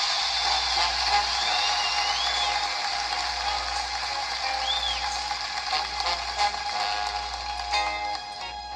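A 1970 live television music performance played back through a speaker: studio audience applause with a few whistles, then the band's music coming in near the end.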